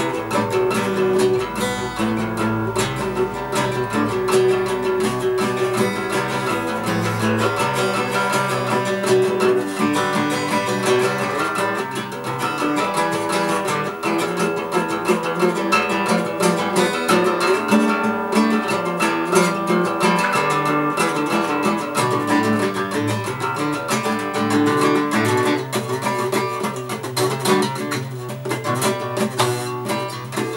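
Steel-string acoustic guitar strummed by hand, with chords ringing continuously and no break.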